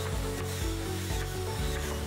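An electric angle grinder grinding into a wooden slab, the disc rubbing steadily across the wood, heard under background music.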